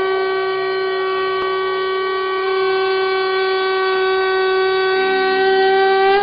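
Conch shell (shankha) blown in one long, steady, loud note with strong overtones.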